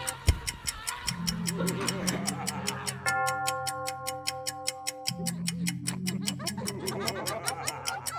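A pocket watch ticking fast and evenly, about four ticks a second, over a sustained, droning horror music score. A single heavy low thud lands just after the start.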